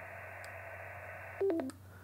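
Xiegu G90 HF transceiver switched off: the steady receiver hiss from its speaker stops abruptly about a second and a half in, together with a short falling three-note beep as the radio powers down.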